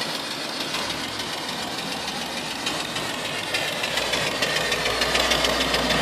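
Homemade vertical steam engine with a 3-inch bore and 3-inch stroke running steadily under steam, with a continuous hiss of venting steam over its regular strokes while it belt-drives an alternator. A low hum comes in about four seconds in.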